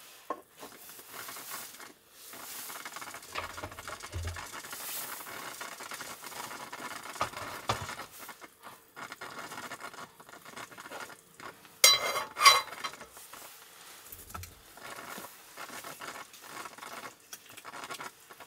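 Cookware and a portable cassette gas stove handled on a wooden table: light rustling and small knocks as a frying pan and bamboo steamer are moved and the stove is set down. Two sharp knocks about twelve seconds in are the loudest sounds.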